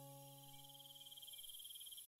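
The tail of a soft piano chord fading away, over a faint steady high trill of crickets in the background ambience.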